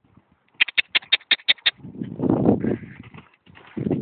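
Grey pony cantering up on a show-jumping arena: a quick run of about nine sharp clicks, then a longer, rougher noisy stretch, and another brief one near the end.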